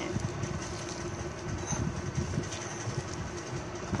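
A hand squeezing and kneading a moist, sticky noodle-and-gram-flour pakora mixture in a bowl, binding it with a little water: soft, irregular squelching, over a steady low hum.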